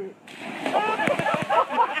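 Water splashing and churning in a river, with excited voices shouting over it.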